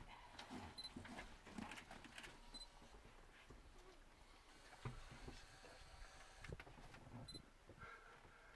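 Near silence: faint outdoor ambience with a few soft knocks and three brief high chirps.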